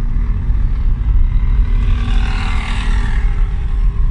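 Steady low rumble of a car driving along a road, heard from inside the moving vehicle. A rise of hiss swells and fades between about two and three seconds in.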